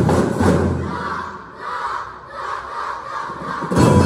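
School drum and lyre band's drums hit in the first moments, then a short break in the music filled with the crowd cheering and shouting. The full band comes back in with a loud hit just before the end.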